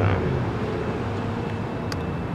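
Steady rumble of city traffic from the street below, mixed with wind on the microphone.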